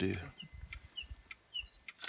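A bird calling: a string of short, high chirps, each falling slightly in pitch, about every half second, with a few faint clicks between them.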